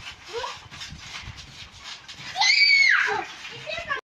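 Children playing on a trampoline: one child lets out a loud, high-pitched squeal lasting about half a second, a little past halfway, with quieter bits of children's voices before and after.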